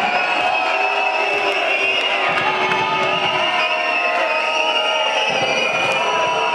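Basketball arena crowd shouting and cheering at a steady level, many voices at once, during a free throw.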